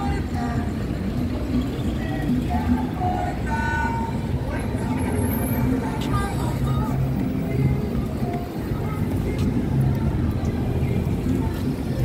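Busy street ambience: a passenger van's engine pulling away, mixed with music and people's voices. Near the end a city bus is close by.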